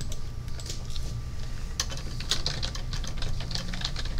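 Irregular light clicks and taps, bunching together from about two seconds in, over a steady low room hum.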